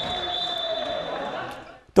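Handball game sound in an indoor sports hall: the ball bouncing on the court and players moving, echoing in the hall, with a faint steady high whine throughout. It fades out just before the end.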